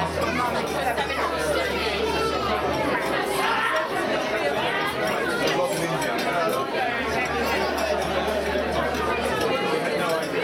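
Crowd of dinner guests talking at once around tables in a large room, a steady babble of overlapping voices.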